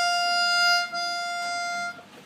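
Piano accordion holding a single note on its tremolo register: two sets of reeds, one tuned slightly sharp, sounding together. The note breaks briefly about a second in, sounds again, and stops near the end.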